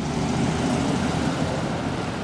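Street traffic: a steady rumble of vehicle engines and road noise.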